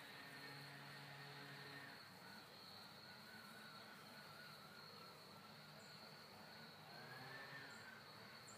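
Near silence outdoors, with a faint, steady, high-pitched insect chorus running underneath.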